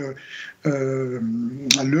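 A man's voice drawing out a long hesitant 'euh' in the middle of a sentence, followed near the end by a single sharp click just before he speaks again.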